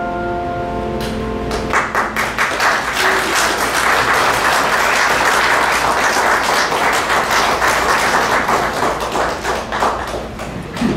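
A grand piano's last chord rings on and dies away, then, about two seconds in, an audience applauds steadily until the end.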